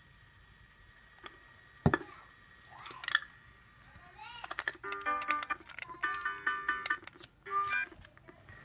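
Buzz Lightyear electronic toy phone: a sharp plastic click about two seconds in, then from about halfway the toy plays a short electronic jingle of beeping synthesized notes.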